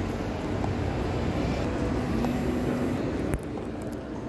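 Steady background rumble of a large indoor shopping-mall atrium, with a single sharp knock about three seconds in.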